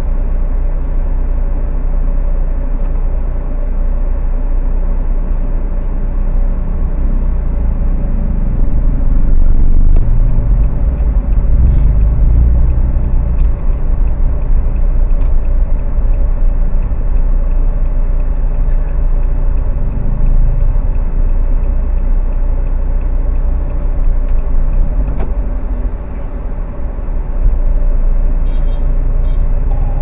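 Low rumble of a car's engine and road noise heard from inside the car, louder for a long stretch in the middle as the car moves off and creeps past a parked minivan.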